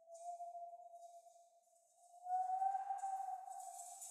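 A frosted quartz crystal singing bowl rings one steady pure tone, which swells louder about two seconds in. A soft rattling from a hand shaker starts near the end.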